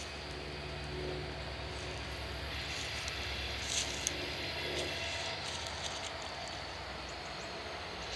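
Distant diesel locomotive engines, a low steady drone.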